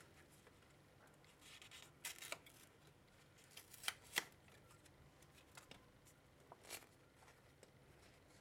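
Faint crinkling and rustling of a paper cupcake liner being cut and peeled off a baked cupcake, with a few short sharp scrapes, twice around two seconds in and again around four seconds in.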